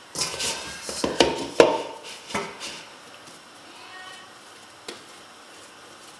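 Hands working bread dough in a stainless steel mixing bowl, knocking and clattering against the metal: a quick run of sharp knocks in the first three seconds, then only a couple of light clicks.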